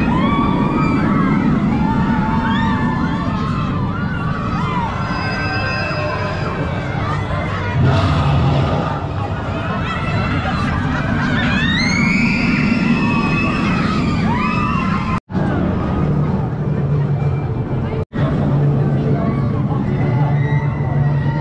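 Shuttle roller coaster running with riders screaming, over a steady babble of the queuing crowd. The screaming rises sharply about twelve seconds in, and the sound cuts out for an instant twice near the end.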